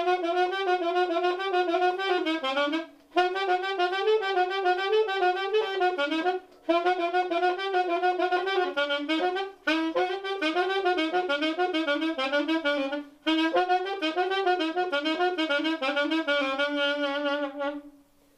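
Solo saxophone playing a huapango melody in quick runs of notes, in five phrases with short breaths between them, the last ending on a long held note.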